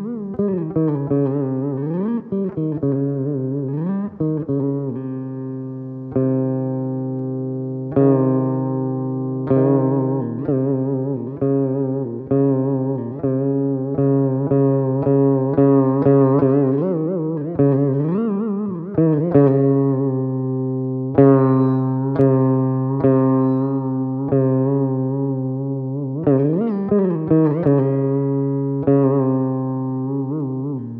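Saraswati veena played solo in Carnatic style: frequent plucked notes whose pitch slides and bends between notes, over a steady low drone.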